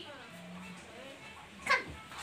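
Young children's voices, soft and wavering, while they play, then one short, sharp, loud sound near the end.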